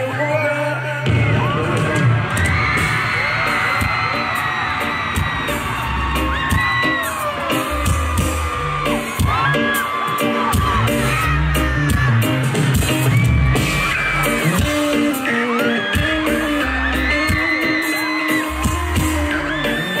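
Live concert music played loud through a stadium sound system: a beat with heavy, repeating bass pulses, with singing and high whoops over it.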